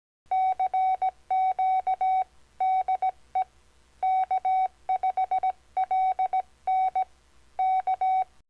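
Morse code sent as a keyed CW tone: one steady beep switched on and off in long and short pulses (dashes and dots), in groups of a few characters with short pauses between.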